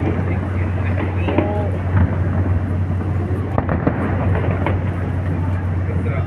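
Distant fireworks display, a string of separate bangs over a steady low rumble, with people's voices mixed in.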